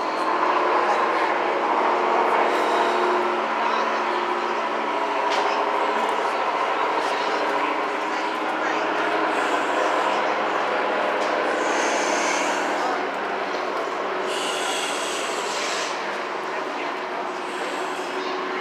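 Steady background chatter of many people talking at once, with a faint low hum under it in the first few seconds.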